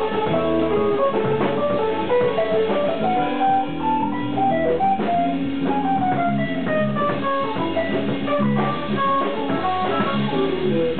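Fusion jazz band playing live: guitar lines over electric bass and drum kit, with a falling run of notes a little after halfway.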